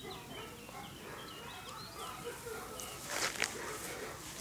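Small birds chirping, with short high calls scattered throughout. A brief rustling noise a little after three seconds is the loudest thing, as the puppy moves on the blanket.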